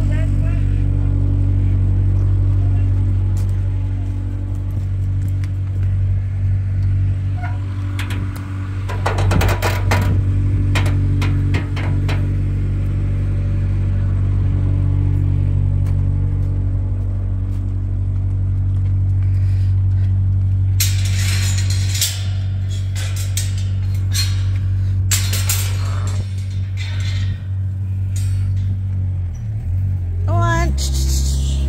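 Farm tractor engine running steadily at an even low speed. Bursts of clanking and rattling come about a third of the way in and again from about two-thirds of the way to near the end.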